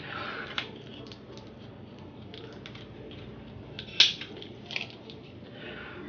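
Scattered small clicks and taps of fingers with long acrylic nails handling something small, with one sharper click about four seconds in.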